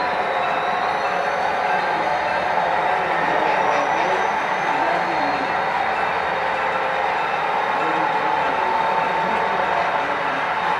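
HO scale model diesel locomotive running with DCC sound, giving a steady engine sound as the train moves along the layout.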